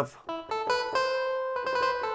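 A synthesized clavinet (synth clav) patch playing a few short plucky notes that lead into sustained notes.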